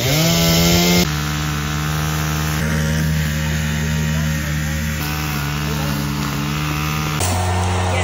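Chainsaw running at high throttle while cutting a log, a steady engine drone at an even pitch. The sound changes abruptly about a second in and again near the end.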